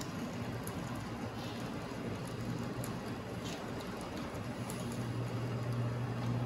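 N-scale model train running along its track: a steady rumble with faint light clicks and a low hum that grows louder near the end.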